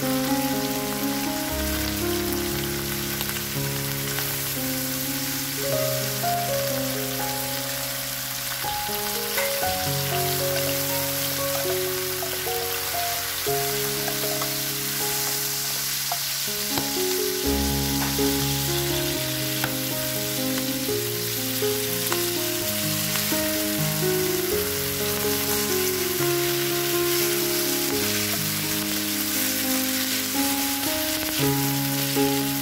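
Squid, sliced garlic and chili sizzling in olive oil in a non-stick pan while being stirred with a wooden spatula. Background music of slow, held notes plays over it.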